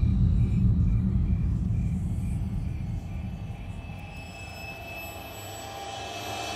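Deep low rumble from a dramatic film score that starts with a sudden hit and slowly fades, with a faint high tick repeating about three times a second. Near the end a rising swell builds.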